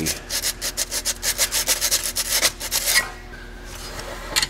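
Emery cloth rubbed by hand over the metal timing marks on an engine's crankshaft pulley, in quick back-and-forth scraping strokes about four or five a second, scrubbing off grime so the degree marks can be read. The strokes stop about three seconds in.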